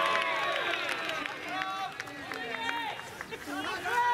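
Several voices shouting and calling out at once, overlapping in a loud, high-pitched babble.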